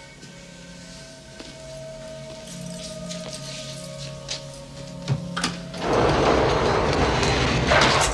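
Soft sustained film-score notes, then a few seconds before the end a heavy solitary-confinement cell door is pushed shut with a loud rushing scrape that ends in a hard thud.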